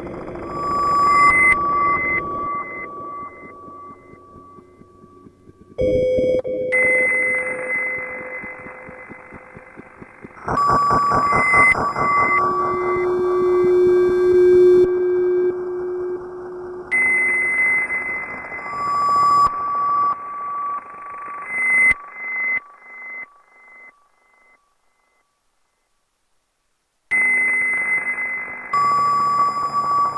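Experimental electronic music made from oscillator tones and noise. Blocks of steady tones and hiss cut in and out abruptly, with a pulsing stretch near the middle, and the sound drops out for a few seconds near the end before starting again.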